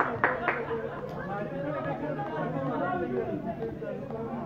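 Background chatter of several voices, with two sharp strikes in the first half-second.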